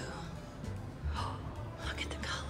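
A woman's soft breathy gasps, one about a second in and another near the end, over quiet background music.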